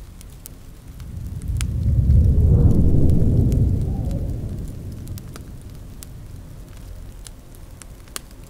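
Fireplace ambience crackling faintly throughout, under a deep rumble that swells about a second in, is loudest around two to three seconds, and fades out by about five seconds.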